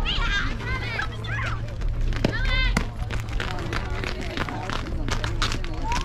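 Young female softball players' high voices calling and chanting. Two sharp knocks come a little after two seconds in, then a run of sharp claps fills the second half.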